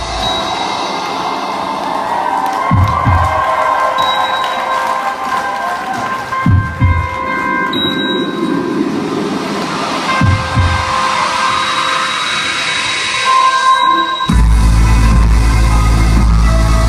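Live instrumental rock band in a quieter passage: sustained electric guitar lines ring over a synth pad with the bass dropped out, broken by a few single low hits a few seconds apart. Near the end the full band with heavy bass and drums comes back in.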